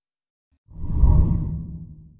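A deep whoosh sound effect that swells in about two-thirds of a second in, peaks, and then fades away.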